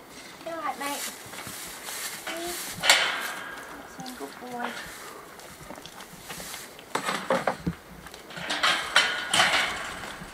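Rattling and clattering of dry oats being shaken and poured from a plastic feed bucket, loudest about three seconds in and again in a longer burst near the end. Several short pitched vocal calls come in the first half.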